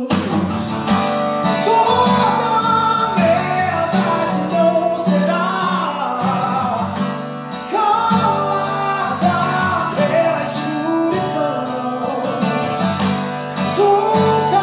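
A man singing in Portuguese while strumming an acoustic guitar.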